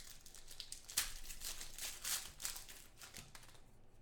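Foil trading-card pack wrapper being torn open and crinkled by hand, an irregular run of crackles that thins out after about three and a half seconds.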